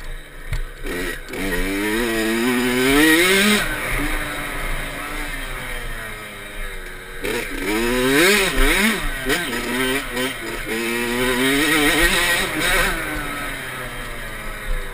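Kawasaki KX65's small two-stroke single-cylinder engine revving as the dirt bike is ridden, its pitch climbing and falling over and over as the throttle opens and closes, with sharp drops where it shuts off.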